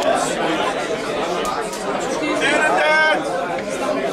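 Crowd chatter: many people talking at once in a crowded bar room, with one man's voice standing out clearer for about a second a little past the middle.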